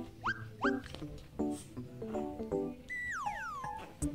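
Background music with two short, rising dog whimpers in the first second and a longer falling whine near the end.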